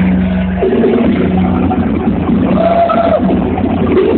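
Live rock band playing loud through the stage PA, with electric guitars and drums and a singer's voice over them.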